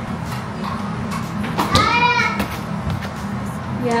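A young child's high-pitched voice calling out once, about halfway through, over a few light knocks of kitchen handling.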